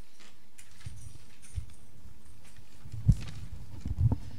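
A pause with a steady low background and a few soft knocks, the loudest a single dull thump about three seconds in.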